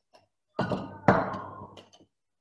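Rolling pin knocking against a stone countertop while dough is rolled out: two thuds about half a second apart, the second louder, after a faint tick.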